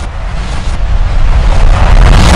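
A synthetic rumbling whoosh sound effect from an animated title graphic, a noisy rush with a heavy low rumble that swells steadily louder.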